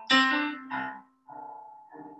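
Piano playing a few notes or chords, struck about every half second, each ringing and dying away before the next, in a slow jazz-tinged phrase.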